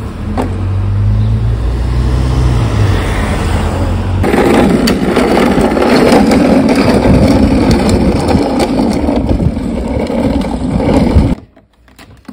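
A low rumble for the first four seconds, then the plastic wheels of a toddler's ride-on toy rolling along an asphalt path: a loud, continuous gritty rumble that cuts off suddenly about a second before the end.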